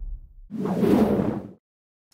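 Title-card sound effects: a low rumble dies away, then a whoosh starts about half a second in, lasts about a second and stops abruptly.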